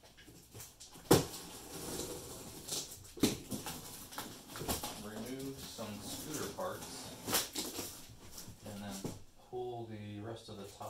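A large cardboard box being handled and cut open: sharp clicks and knocks about a second in, about three seconds in and about seven seconds in, the first the loudest. Low, indistinct muttering comes in between, around the middle and near the end.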